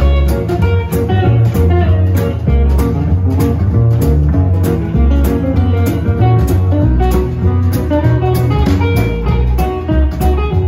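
Live swing jazz band playing an instrumental passage: archtop and acoustic guitars over a plucked double bass and a drum kit keeping a steady beat.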